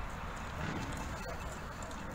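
Outdoor street ambience: indistinct voices of people close by and a few light knocks, over a steady low rumble.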